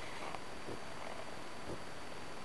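Quiet room tone: a low, steady hiss with a few faint soft sounds, without speech.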